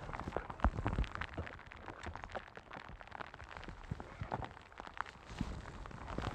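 A hooked largemouth bass splashing and thrashing at the surface beside a bass boat in the rain, heard as irregular splashes, ticks and taps over a light steady hiss of rain.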